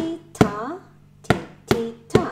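Wooden stick tapping a plastic food tub used as a homemade drum: four sharp taps in an uneven rhythm, each with a spoken rhythm syllable.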